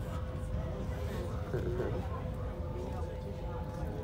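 Steady low rumble of a train in motion, heard inside the carriage, with a constant hum running through it. Indistinct voices murmur over it, briefly louder a little after the middle.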